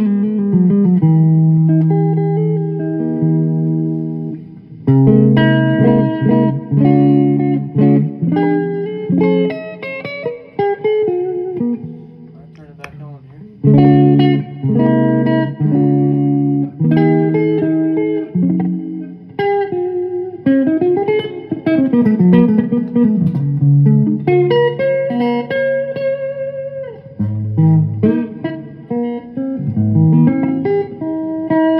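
Electric guitar playing held chords and short melodic phrases. There is a brief break about four seconds in, a quieter stretch near the middle, and bent, sliding notes later on.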